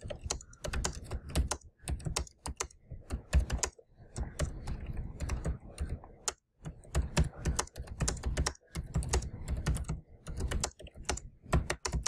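Typing on a computer keyboard: a quick, irregular run of key clicks, with a short pause about halfway through.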